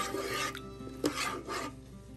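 Metal spoon stirring rice, lentils and chopped vegetables in water inside a rice cooker's inner pot, scraping against the pot bottom in a few rasping strokes.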